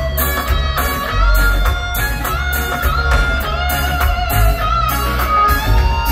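Live reggae band playing an instrumental passage, heard loud through the venue's PA: an electric guitar plays a lead line with bent notes over a steady, heavy bass and drum groove.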